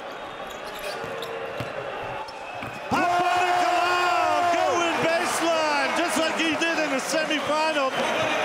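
A basketball dribbling on a hardwood court under steady arena crowd noise. About three seconds in, a loud held pitched squeal sets in for about two seconds. It is followed by a run of short, quick squeaks that bend up and down, typical of sneakers on the court.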